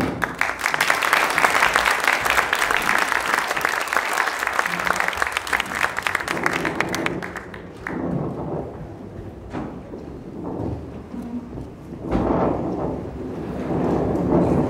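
Audience applauding after a song, dense and steady for about seven seconds and then dying away into quieter, uneven sound with some low rumble.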